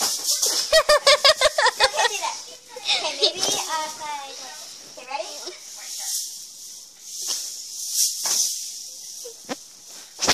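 Children's voices without clear words. About a second in there is a quick run of pulsed, laugh-like bursts, then wavering vocal sounds, then softer hissy sounds.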